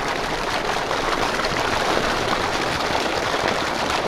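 Steady stream of water pouring from a stocking truck's PVC discharge pipe and splashing onto the pond surface.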